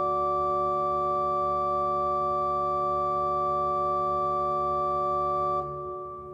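Chamber organ holding a sustained final chord at a steady level, released about five and a half seconds in. The sound then rings on and fades in the church's reverberation.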